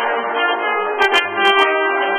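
A trombone ensemble playing a sustained chord passage together, with a few sharp clicks about a second in.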